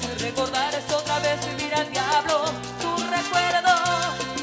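Live salsa band playing: bass line, percussion and brass, with a sung melody over it.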